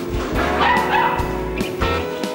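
Golden retriever puppy yipping briefly about half a second in, over background music with a steady bass line.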